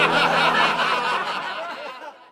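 A laughter sound effect, edited in, that fades away toward the end.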